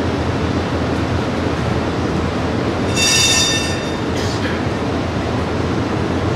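A tram running on its track with a steady rolling rumble. About three seconds in there is a brief high-pitched wheel squeal.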